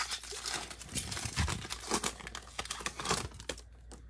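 Foil wrapper of a Panini Prizm football trading-card pack being torn open and crinkled by hand: irregular crackling, thinning out near the end.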